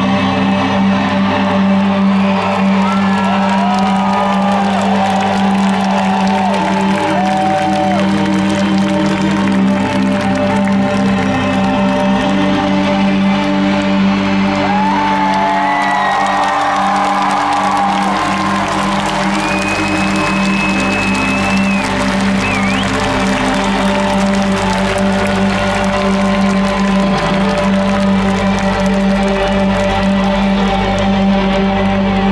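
Sustained, droning music with long held notes over a concert PA, with high gliding notes rising above it and a festival crowd cheering.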